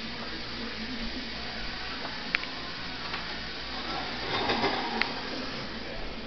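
Dishwashing at a kitchen sink: dishes clink sharply twice, about two seconds in and again near five seconds, over a steady hiss.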